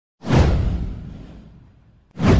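A whoosh sound effect from a news intro animation: it starts suddenly about a quarter second in, sweeps down in pitch over a deep rumble, and fades away over about a second and a half.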